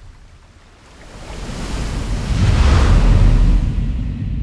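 Sea surf: a rush of wave noise that swells from about a second in and eases off just before the end, over a deep low rumble.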